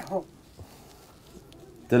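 Faint cooing of a dove in the background, between short bits of speech at the start and end.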